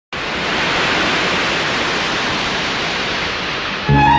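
Steady, loud hiss of rushing noise with no tone in it. Just before the end it gives way to a film-song orchestra starting up.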